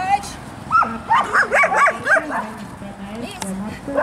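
A dog barking excitedly in a quick string of high yips for about a second and a half, starting about a second in.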